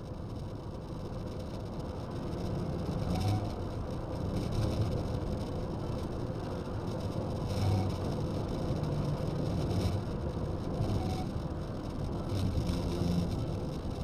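Car engine and road noise from inside the cabin, growing louder over the first few seconds as the car speeds up to overtake a semi truck, then holding steady with a stronger low rush every second or two.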